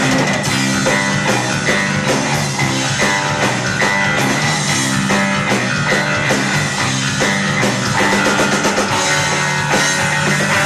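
Instrumental rock played live: electric bass guitars and a drum kit at a steady, loud level, with no vocals.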